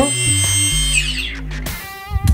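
A hexacopter's electric motors whine steadily at low throttle, then spin down with a falling whine about a second in. This is the ZYX-M flight controller cutting the motors because the throttle is at zero and the copter is not moving. Music plays along.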